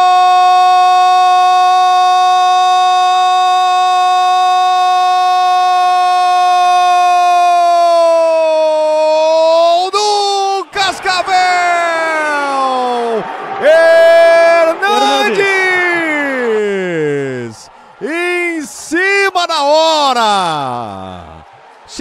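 Sports commentator's long held goal cry, 'Gol!', sustained on one high pitch for about ten seconds. It is followed by a string of shouted calls that slide up and down in pitch and fall away near the end.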